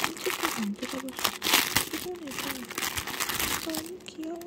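Clear plastic bag crinkling and rustling as a small plush toy is worked out of it by hand, an irregular crackle that is loudest about halfway through.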